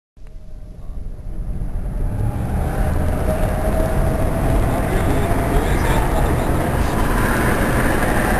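Road and engine rumble inside a moving car's cabin, fading in over the first two or three seconds and then holding steady, with faint voices under it.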